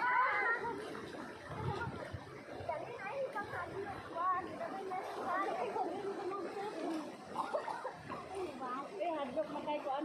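Several people's voices chattering and calling out to each other, with a louder call at the very start.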